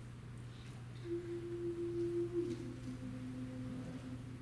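Starting pitches sounded for a small choir before it sings: a pure steady note held for about a second and a half, then a lower note held longer.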